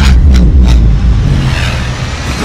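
Film sound effects of a car crashing and rolling over: a loud, heavy low rumble with two sharp impacts around half a second in.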